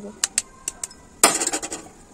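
An egg tapped against the rim of a small steel bowl: four light clicks, then a louder crack about a second and a quarter in as the shell breaks open.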